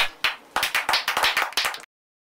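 A small group of people clapping. The claps start out separate, quicken into steady applause, then cut off suddenly near the end.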